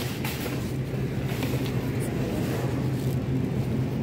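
Steady low hum and background noise of a supermarket produce aisle, with no clear single event standing out.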